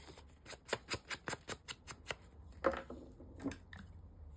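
Cardstock journal card being handled and turned over over paper album pages: a run of small irregular clicks, taps and rustles of card on paper.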